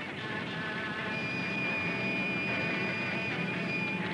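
Noisy, droning rock music with electric guitar, a dense unbroken wash of sound, with a steady high whine held from about a second in.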